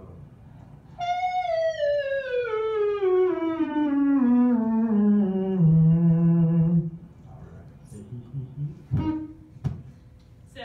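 A voice filmed during a laryngoscopy, played back over loudspeakers, slides smoothly down in pitch from a high note to a low one over about five seconds and holds the low note for about a second. Two short knocks follow near the end.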